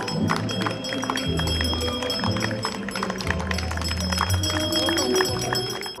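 A handbell rung over and over as the ceremonial last bell, with sustained high ringing tones, over music with long low notes.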